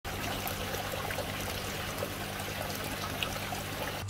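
Water trickling steadily into an aquaponics fish tank, with a faint steady low hum underneath.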